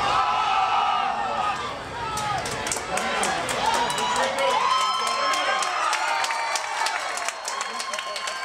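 Football crowd cheering and yelling, many voices shouting over one another.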